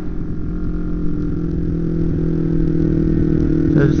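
Kawasaki Ninja 250R's parallel-twin engine running steadily while riding, picked up by a helmet camera, its pitch rising slightly toward the end.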